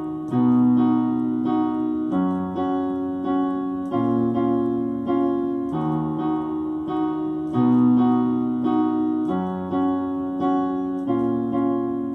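Digital piano playing a repeating four-chord loop, D♯ minor, B major seventh, F♯ and A♯ minor seventh, hands together. Held left-hand root notes change about every two seconds under syncopated two-note right-hand chords.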